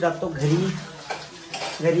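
Dishes and cutlery clattering in a home kitchen, with a sharp clink about halfway through. A person's voice is heard briefly at the start and again near the end.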